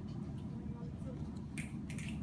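A few finger snaps near the end, made by students as the classroom sign of agreement with a classmate's answer, over a low steady room background.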